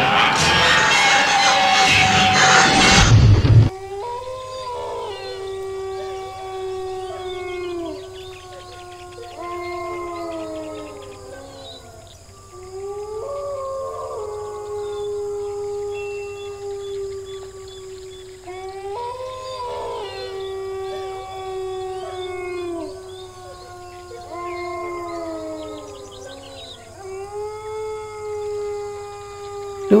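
Canine howling: several long, overlapping howls, each rising, holding its pitch and falling away, coming again every few seconds. It is preceded by a loud burst of noise that cuts off suddenly a few seconds in.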